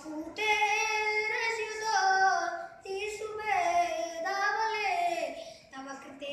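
A boy singing solo and unaccompanied, a Bollywood song melody with Sanskrit words, in long held notes that glide between pitches with short breaths between phrases.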